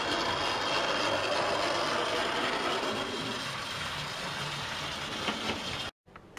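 00 gauge model tank locomotive running along the layout with its coaches: a steady whirr of the small electric motor and the wheels on the rails, easing off a little as it goes and cutting off suddenly near the end. The track is dirty, which makes the loco stutter.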